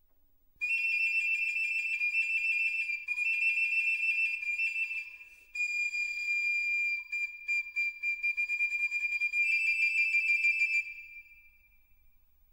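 Music: a shrill, high whistle-like note held in three long blows with short breaks, the last one wavering and fluttering before it fades out near the end.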